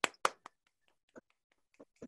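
A short, sparse round of hand clapping: three sharp claps in the first half-second, then a few fainter, spread-out claps.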